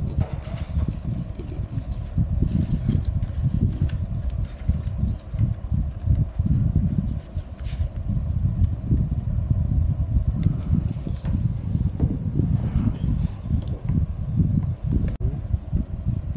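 Continuous low, fluctuating rumble of air buffeting the microphone, with a faint steady hum underneath and a few light clicks.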